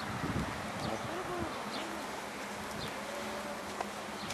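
Outdoor background with a steady low buzz, faint distant voices and a few faint high chirps.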